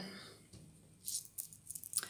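A beaded scissor fob of red beads and gold-coloured metal dangles being picked up by hand, its beads and metal charms clicking and jingling against each other. The light clicks come in a brief cluster in the second half.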